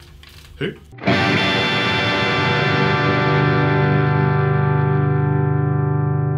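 A single G chord on a PRS electric guitar's bridge humbucker, played through an overdriven Marshall amp. It is strummed once with a windmill arm swing about a second in and then rings out, fading slowly.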